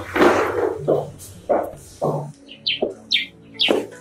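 Birds chirping, a quick run of short high chirps in the second half, over background music with a regular beat. A short loud noisy burst comes at the very start.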